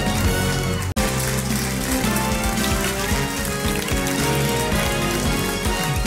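Title theme music of a television programme, dense and continuous, cutting out for an instant about a second in.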